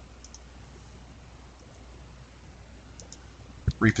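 A few faint computer mouse clicks over a low, steady hum of room tone.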